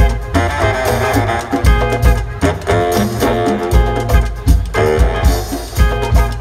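Live Afrobeat band playing an instrumental groove, with horns, electric guitar, keyboard and drum kit over repeated deep bass notes.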